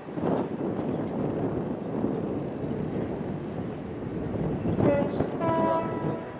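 A ship's horn starts sounding about five seconds in, a long blast with several overtones, given as part of a horn salute between departing cruise ships. Before it there is a steady rush of wind and distant background noise.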